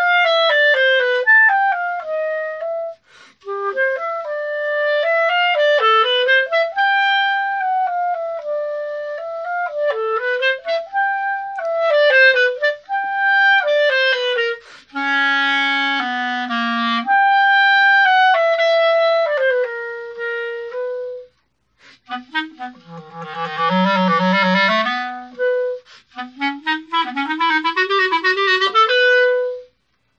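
Solo unaccompanied clarinet playing a melodic passage in phrases with brief breaths between them. There are short detached notes a little after twenty seconds, dips into the low register, and a rising run near the end before the playing stops.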